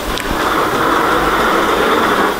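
A kindergarten robot's electric drive whirring steadily as its head turns, lasting about two seconds.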